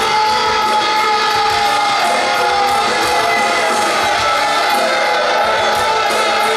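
Rock band playing live: electric guitars, bass and drums, with cymbal hits about four a second under held guitar notes.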